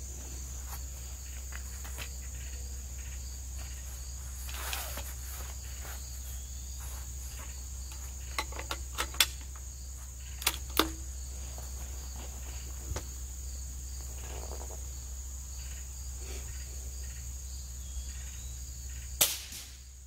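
Suppressed shots from a Vudoo V22 .22 LR bolt-action rifle fitted with a Liberty Renegade suppressor: several sharp cracks spread across the time, with smaller clicks among them and the last crack near the end. Crickets chirr steadily behind them.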